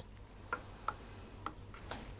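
A few faint clicks and ticks as battery-tester clamps are handled and clipped onto a car battery's terminal.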